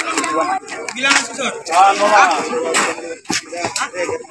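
Men's voices talking at close range, broken by a few sharp slaps or knocks.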